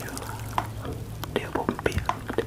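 Small water drops ticking and plinking irregularly, several a second, as spray-bottle water drips after a spray burst simulating rain.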